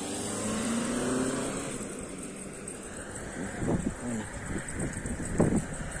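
A car driving past on the road, its engine and tyre noise swelling and then fading over the first two seconds. Irregular low rumbles follow.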